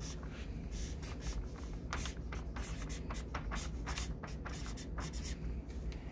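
Felt-tip marker drawing and writing on chart paper pinned to a wall: a run of short, quick scratching strokes.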